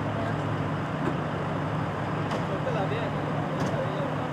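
Steady low hum of a vehicle engine idling close by, with faint, indistinct voices in the background.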